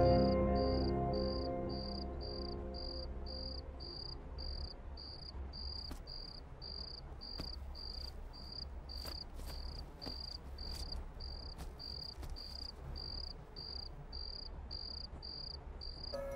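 A cricket chirping steadily at about two chirps a second, as background music fades out over the first couple of seconds.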